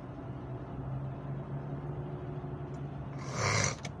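Steady low hum of road and engine noise inside a moving car's cabin. About three seconds in comes a short, loud rush of noise lasting about half a second.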